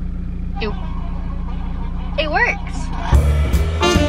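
A steady low hum inside the car, then, about three seconds in, music starts playing through the car's stereo, louder than the hum.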